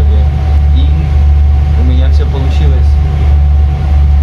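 Steady low engine drone of a passenger ferry heard inside its cabin, with a constant thin hum above it; a young man's voice speaks quietly over it.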